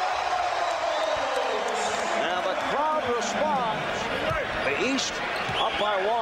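Basketball arena sound: a steady crowd din with sneakers squeaking on the hardwood court in many quick chirps from about two seconds in, and a basketball being dribbled.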